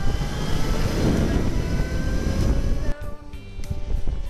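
A loud rushing whoosh over background music. It lasts about three seconds and cuts off abruptly, leaving the music.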